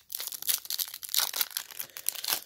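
A trading-card pack wrapper being torn open by hand and crinkling: a dense run of quick crackles and rustles.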